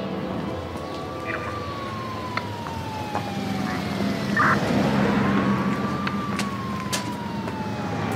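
A police siren wailing in two slow sweeps, each rising for about a second and then falling for about three, over a low traffic rumble.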